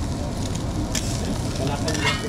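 Eggs and omelettes sizzling on a hot flat-top griddle, with a steel spatula clicking against the plate about a second in and again near the end.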